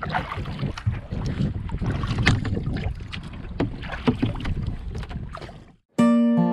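Water splashing and lapping around a kayak, with irregular sharp splashes and wind on the microphone. The sound fades out just before the end.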